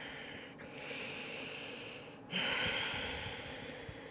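A woman's slow, deep breathing close to the microphone: a soft breath in, then a louder breath out starting a little past halfway and fading away.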